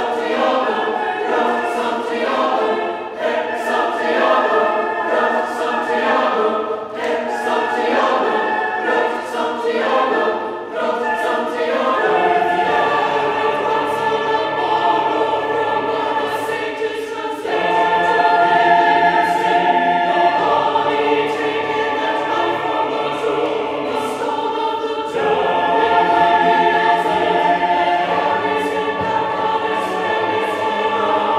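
Mixed choir of men's and women's voices singing unaccompanied in a reverberant church. For the first twelve seconds the voices move in quick overlapping lines; then they settle into long held chords with the low voices joining underneath, the chord changing twice and swelling a little louder each time.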